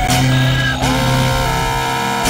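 Atonal synthesizer noise music: layered held tones over a steady low drone. A little under a second in, a higher tone glides up and then holds.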